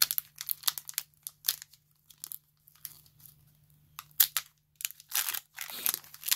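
Foil Pokémon booster pack wrapper being torn open and crinkled by hand: irregular crackling rustles, denser near the end as the tear opens.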